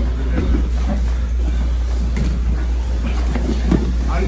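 A steady low rumble runs under grappling on gym mats: bodies scuffling and shifting on the mat, with faint voices in the background.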